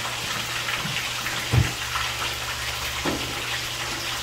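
Yellowtail snapper frying in oil in a pan, a steady sizzling hiss. A single soft thump sounds about one and a half seconds in.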